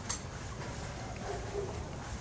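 Soft footsteps and handling noise from a person walking with a handheld camera gimbal, over a low outdoor rumble, with one sharp click just after the start.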